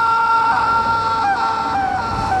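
A young man's long, high-pitched yell, held on one pitch with small wavers as he swings through the air on a web line.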